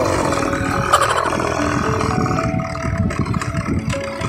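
Motorcycle being ridden over a rough concrete-slab and gravel track: engine and road noise with uneven rumble and rattle, and a sharp knock about a second in.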